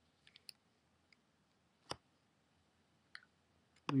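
A few sharp, isolated computer mouse clicks over quiet room tone. The loudest comes about two seconds in, with fainter ticks in the first half second and two more shortly before the end.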